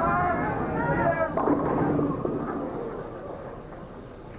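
A bowling ball rolls down a wooden lane with a low rumble and crashes into the pins about a second and a half in; the clatter fades over the next two seconds, and the shot leaves the 4 pin standing. Over the roll, a voice calls out at the ball.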